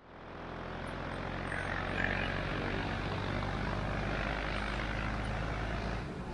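A steady roar with a low hum beneath it, the noise of a busy street-food stall. It fades in at the start and holds level.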